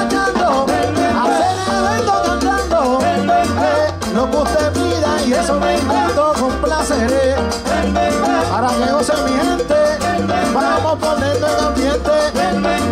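Live salsa orchestra playing an instrumental passage, with a repeating bass line under percussion and melodic lines.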